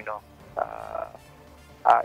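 A man's voice heard over a phone line: a short word, then a drawn-out, croaky hesitation sound, with talk starting again near the end.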